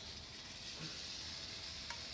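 Red diamond rattlesnake rattling its tail in a steady, continuous hiss-like buzz while it is held and stretched for measuring, with one small click near the end.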